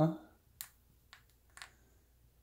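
Three short, sharp clicks about half a second apart, after the tail of a man's spoken "uh-huh".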